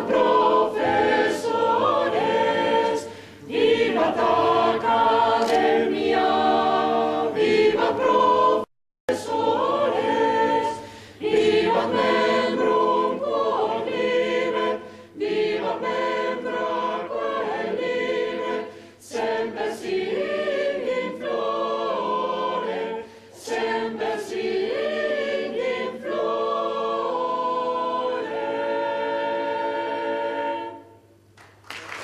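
A choir singing in long held phrases, breaking off completely for a moment about nine seconds in.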